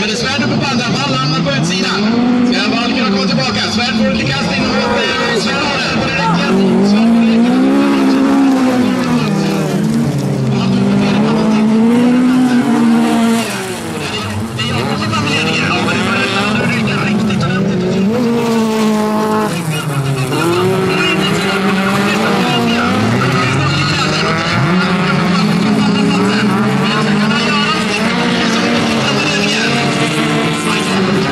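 Several race car engines revving hard on a dirt bilcross track, their pitch climbing and dropping again and again as the cars accelerate, shift and lift off for corners. The engine sound dips briefly about halfway through.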